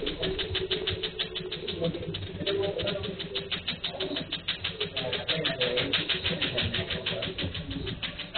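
Laser tattoo-removal machine firing a rapid, even train of clicks, several pulses a second, as the handpiece is worked over the skin, heard through a security camera's microphone.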